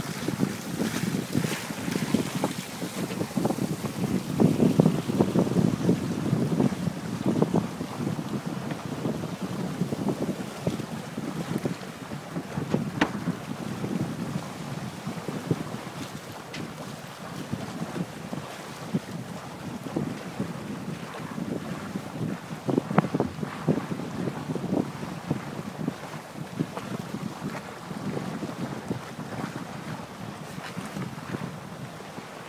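Wind buffeting the microphone over water rushing and splashing along the hull of an IF Folkboat sailing under way in a chop, rising and falling in gusts, strongest a few seconds in and again about three-quarters of the way through, with the odd short sharp slap.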